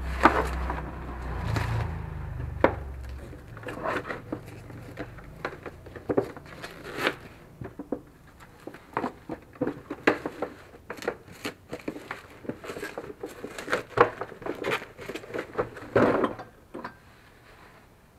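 Bubble wrap and plastic packaging being pulled off and crumpled by hand: a long run of crinkles and sharp crackles, with heavier handling knocks in the first few seconds.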